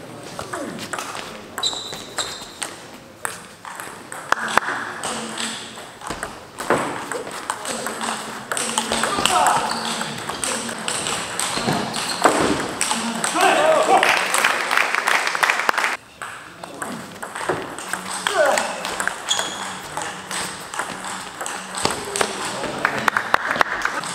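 Table tennis rallies: the celluloid-type ball clicking off the rubber bats and the table in quick succession, with voices calling out in between strokes. Play pauses briefly about two-thirds of the way in.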